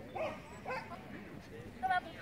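A dog yipping in three short, faint barks, the last and loudest near the end.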